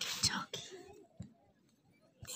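A short breathy whisper close to the microphone, about half a second long, followed by a few faint soft sounds and a small click.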